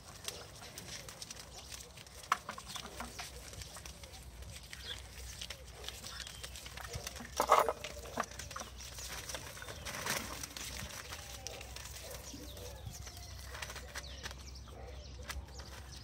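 Chihuahua puppies playing: scuffling and rustling on newspaper, with small scattered yips and whines, and one brief, louder yelp about seven and a half seconds in.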